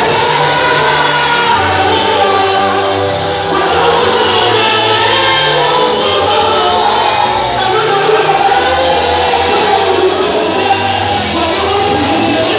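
Loud live gospel music: a group of voices singing together over instrumental accompaniment with a moving bass line.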